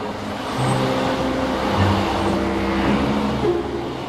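Car sound effect: a steady rushing drive-by noise of a motor vehicle setting off, laid over soft held background music notes.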